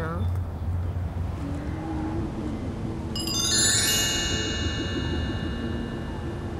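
A shimmering, bell-like chime sound effect: many high ringing tones strike together about three seconds in and ring on, slowly fading. Underneath are a low wavering tone and a steady low hum.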